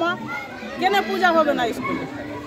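Children's voices calling and chattering as they play, with a woman's voice briefly at the start.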